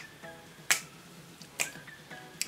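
Finger snapping: two sharp snaps a little under a second apart.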